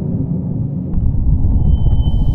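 Sound effect for an animated logo intro: a loud, deep rumbling build-up that grows heavier about a second in, with a thin, steady high tone joining about a second and a half in.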